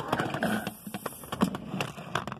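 Quick, irregular knocking and clattering of objects and the phone against a wooden drawer, with handling noise as the camera is jostled.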